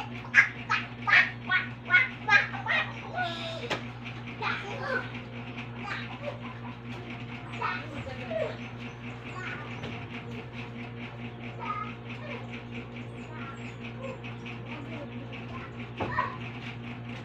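A young child's voice making rhythmic, repeated vocal sounds, loudest in the first few seconds and fainter after, over a steady low hum.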